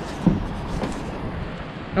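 Steady rush of river water flowing under a footbridge, with a single knock from the handheld camera being handled about a quarter second in.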